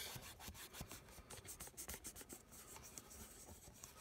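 Faint rubbing and scratching of a fingertip across the glossy face of a trading card, wiping off an autograph whose marker ink did not take on the surface.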